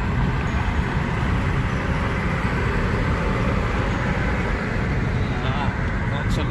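Steady road and engine noise inside a moving car's cabin: an even low rumble with a hiss above it.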